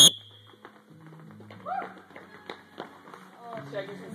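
A single very short, piercing high-pitched tone right at the start, used as the go signal for the ladder drill. Then scattered footfalls and sharp taps on the turf as the athletes start through the agility ladder, with voices and music in the background.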